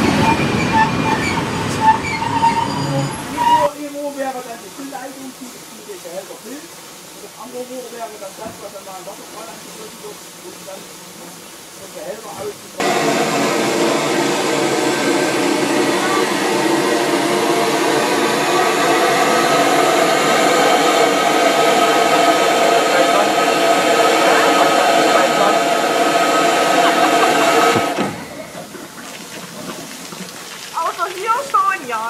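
Narrow-gauge passenger coaches rolling past close by for the first few seconds, then a quieter stretch. About 13 s in, a loud steady hiss with ringing tones starts abruptly and runs about fifteen seconds before cutting off: steam blowing off from the standing DR class 99.77 narrow-gauge steam tank locomotive.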